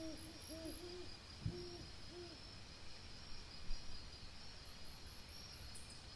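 An owl hooting: a quick series of short, low notes that rise and fall, about two a second, stopping a little over two seconds in. Two low thumps, about one and a half and nearly four seconds in.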